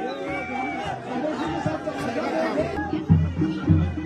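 Chatter of a large outdoor crowd, many voices at once. About three seconds in, music with a heavy, regular low beat comes in over it.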